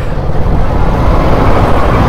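Kawasaki Versys 650's parallel-twin engine running as the motorcycle rides slowly through town traffic, under a steady wash of wind and road noise on the microphone.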